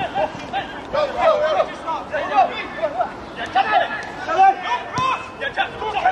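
Players and onlookers at a football match shouting and calling to each other during open play, in short bursts from several voices, with a sharp knock about five seconds in.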